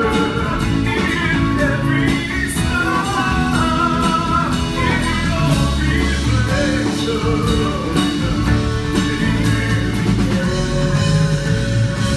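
A male vocalist singing live into a microphone over an amplified band with guitar, piano and drums.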